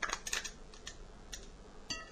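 A few light clicks and taps of handling in the kitchen, then near the end a clink against the glass bowl with a brief ringing tone.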